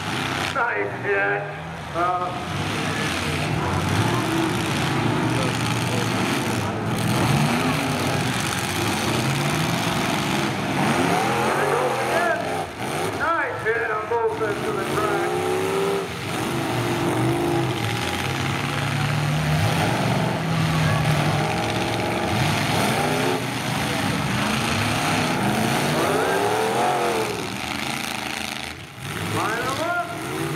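Engines of several 1980s full-size demolition derby cars running and revving hard as the cars push and crash on the dirt floor, rising and falling in pitch, with crowd voices mixed in.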